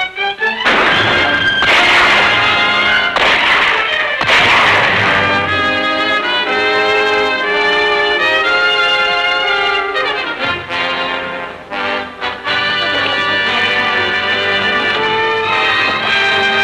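Loud orchestral film score led by brass, with trumpets and trombones playing a dramatic action cue over strings. Several loud crashes come in the first five seconds, and the music dips briefly about twelve seconds in.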